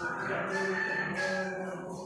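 One long crowing call, held steady for nearly the whole two seconds and fading near the end.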